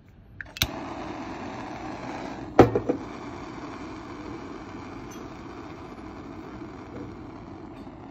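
Iroda PT-550 CR butane torch clicking alight, then the steady hiss of its gas flame, slowly dropping in level, with a second sharp ignition click about two and a half seconds in. The torch is nearly out of butane, and this is its last gas.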